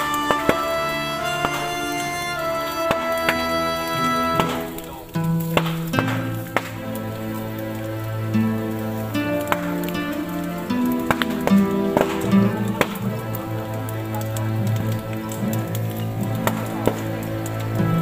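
Music of sustained held notes with sharp percussive strikes; about five seconds in, the melody drops to low held notes.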